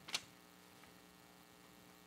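Near silence with a faint steady electrical mains hum, broken by one brief soft click just after the start.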